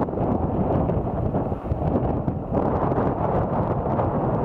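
Strong gusty wind buffeting the microphone, a dense rumbling rush that swells and dips. From about two and a half seconds in it turns somewhat brighter.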